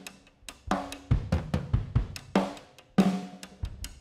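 Intro music: a drum-kit beat of snare, bass drum and cymbal hits under held pitched notes, getting going about half a second in.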